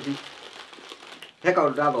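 Plastic wrapping crinkling and rustling as hands rummage through a cellophane-wrapped basket of sweets and snack packets; a man's voice comes in about one and a half seconds in.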